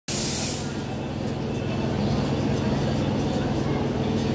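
A train engine at a station runs with a steady low hum. A short hiss of air at the very start gives way to it, with voices underneath.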